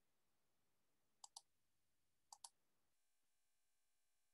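Two quick double clicks, about a second apart, over near silence. A faint steady hum starts about three seconds in.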